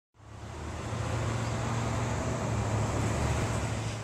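Steady low vehicle rumble with a hiss, fading in over the first second.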